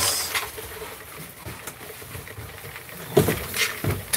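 Faint footsteps and phone-handling noise while walking down a staircase, with a louder burst of knocks and rustling about three seconds in.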